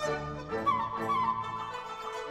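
Dizi (Chinese bamboo flute) solo with a Chinese orchestra: the flute plays a quick run of notes about halfway through, over sustained low notes from the cellos and double basses.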